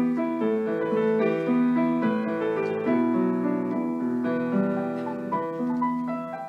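Background piano music, held notes overlapping one after another.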